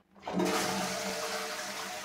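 Toilet flushing: water rushes in suddenly about a quarter second in and keeps running strongly.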